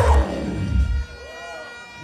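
Dancehall music on a sound system with heavy bass, the tune cut about a second in, leaving a high held tone ringing on and a brief gliding voice over it.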